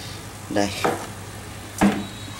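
Air stone bubbling steadily in a tub of water, with one sharp knock near the end as a fish net works in the tub.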